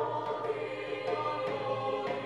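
High school mixed chorale singing sustained chords, the held notes shifting a couple of times.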